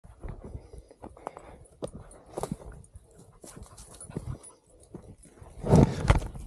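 Footsteps and rustling through dry brush, with a springer spaniel moving and panting close by; a loud sudden rush of rustling noise comes near the end.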